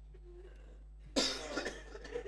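A man coughs once, sudden and loud, about a second in, after a quiet pause.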